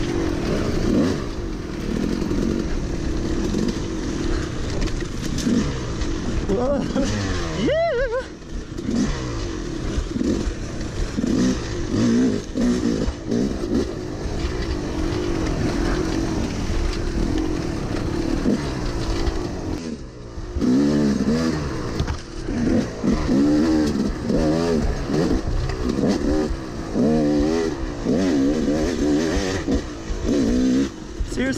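Yamaha YZ250 two-stroke dirt bike engine, heard from on the bike, revving up and down under the rider's throttle. The pitch climbs steeply about eight seconds in, dips briefly around twenty seconds, then rises and falls quickly and repeatedly.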